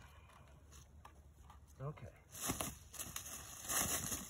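Red-shouldered hawk beating its wings against dry fallen leaves: a run of flapping and leaf rustling starts a little past halfway and builds toward the end.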